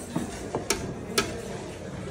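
Four light, sharp clicks in the first second and a half, over a low steady background hum.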